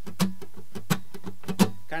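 Steel-string acoustic guitar strummed in short, percussive strokes, a rhythm pattern with a louder accented stroke about every 0.7 s and lighter strokes between.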